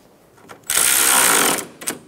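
Cordless ratchet running for about a second, driving a 10 mm bolt down on the radiator hose bracket, followed by a couple of sharp clicks near the end.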